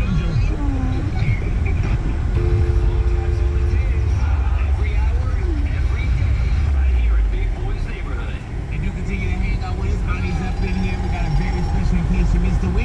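Steady low road and engine rumble inside a moving car's cabin, with faint voices from the car radio underneath.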